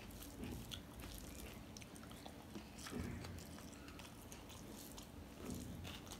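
Eating rice by hand: soft chewing with small scattered mouth clicks, and fingers mashing and mixing rice on a steel plate.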